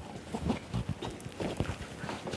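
A string of short, irregular light knocks and taps on a hard surface.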